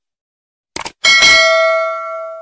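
Subscribe-button sound effect: a quick mouse double-click, then a bright notification bell ding that rings on and slowly fades.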